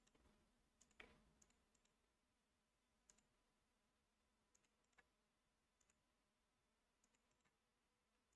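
Near silence broken by faint, scattered computer mouse clicks, some in quick pairs, the strongest about a second in and again about five seconds in.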